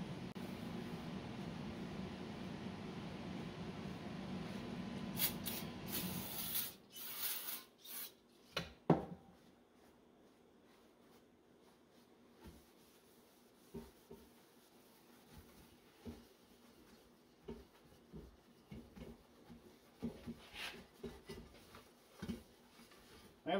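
Brake cleaner sprayed in short hissing bursts into the steel vacuum cylinder of a HydroVac brake booster, with a sharp knock about nine seconds in, followed by faint rubbing and light clicks as the cylinder is wiped out with a paper towel. A steady background hum runs under the first several seconds and stops about seven seconds in.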